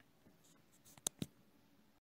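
Two sharp clicks in quick succession about a second in, a double-click, just after a faint brief rustle, in a quiet room.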